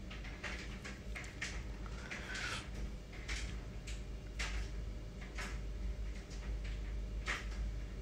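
Light, irregular knocks and rustles of things being handled by hand, roughly one a second, most likely the radiator and its packaging, over a steady low hum.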